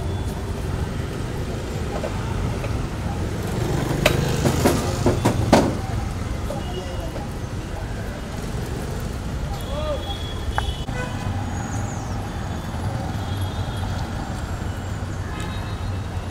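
Street ambience: a steady low rumble of traffic, with a few sharp knocks about four to five and a half seconds in and voices in the background.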